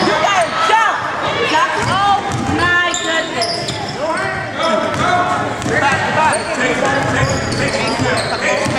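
Sound of a basketball game in a gym: players' and spectators' voices calling and shouting over one another, with sneakers squeaking and the ball bouncing on the hardwood court, all echoing in the hall.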